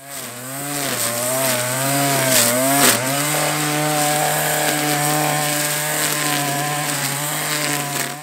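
Engine of a petrol string trimmer running at high speed while cutting tall grass. The engine pitch rises and dips under the changing load for the first few seconds, with a sharp crack about three seconds in, then holds steady until it cuts off at the end.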